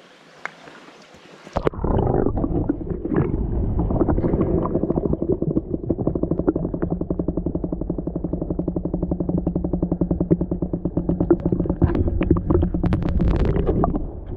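A GoPro in its waterproof housing goes under water, and the sound turns suddenly muffled and loud: a low underwater rumble with a low hum. About a third of the way in, a fast, even ticking buzz sets in, with a few sharper clicks near the end.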